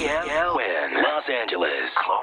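Speech only: a voice with a thin, radio-like sound. The end of a music sting cuts off about half a second in.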